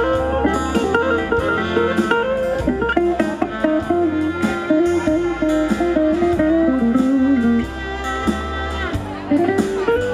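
Live bluegrass band playing: mandolin, fiddle, acoustic guitar and upright bass, with a melody line moving up and down over a steady bass.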